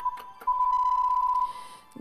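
Quiz-show answer timer: a couple of short electronic ticks, then one steady electronic beep about a second long, sounding as the countdown for the answer runs out.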